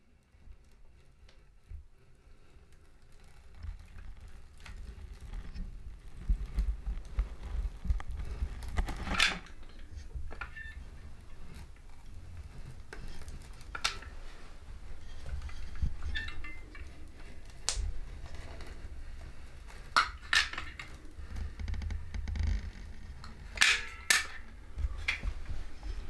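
Manual caulk gun being squeezed along a window sill: scattered light clicks and clacks of the trigger, plunger rod and tube against the metal frame, a handful spread over the span, over a low rumble.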